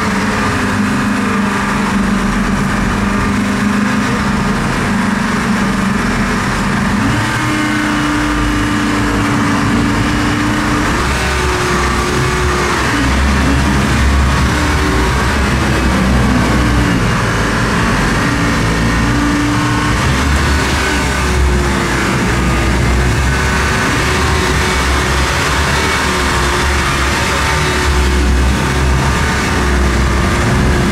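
Boat engines running under way, their pitch rising and falling several times, over a steady rush of water and wind.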